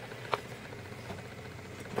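Faint handling noise as a carbon-fibre quadcopter frame is turned around on a table, with one light tap about a third of a second in.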